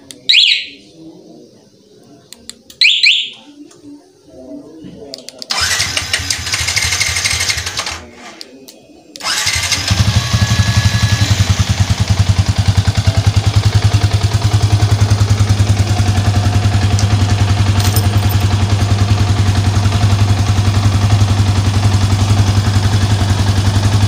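Two short chirps from a motorcycle alarm's siren as it answers the key-fob remote, then the remote-start function cranking the Yamaha Vixion's 150 cc single-cylinder engine: a first crank of about two seconds that does not catch, a second crank, and the engine catches about ten seconds in and idles steadily.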